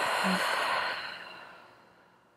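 A woman's long open-mouthed exhale, an audible sigh, with a brief hum of voice just after it starts, fading away over about a second and a half. It is the sighing out-breath of a slow relaxation breathing exercise.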